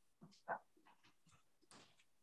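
Mostly near silence with a few faint, short dog sounds, the clearest one about half a second in.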